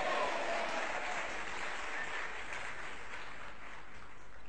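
Audience applauding steadily in a pause of the speech, an even clapping that holds through the pause and fades slightly toward the end.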